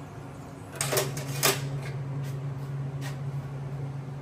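A steady low machine hum that starts about a second in, with a few light metallic clicks and taps of metal being handled.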